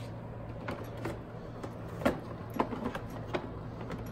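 Plastic seedling tray being slid back onto a metal grow-light shelf and pushed into place: a few knocks and scraping clicks, the loudest about halfway through. A steady low hum runs underneath.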